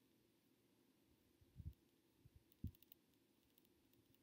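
Near silence: room tone with a few faint, soft low bumps about a second and a half and nearly three seconds in, and some faint ticks.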